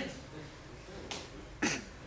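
Two short, sharp clicks about half a second apart, in a quiet pause between voices.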